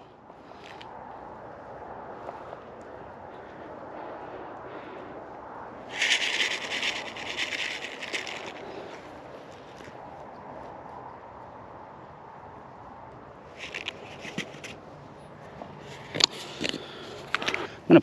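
A paper seed packet rustling for about two and a half seconds as wheat seed is shaken out of it by hand, followed later by a few faint clicks.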